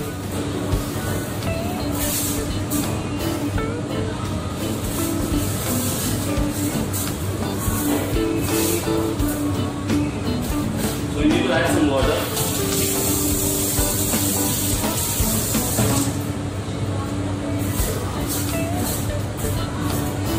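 Background music over the rustling and crinkling of aluminium foil being unrolled and spread flat on a steel counter, with a few seconds of steady hiss in the middle.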